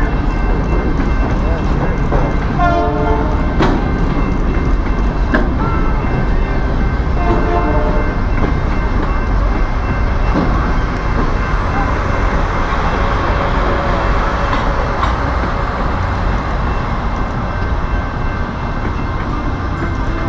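Freight cars of a train rolling past at close range: a loud, steady rumble of steel wheels on the rails.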